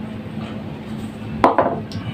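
A small plastic glue bottle set down on a table: a sharp knock about one and a half seconds in, followed by a few small clatters and another light tap near the end, over a faint steady hum.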